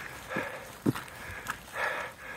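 Footsteps on a wet, muddy trail: a few soft steps, then a breath drawn in near the end.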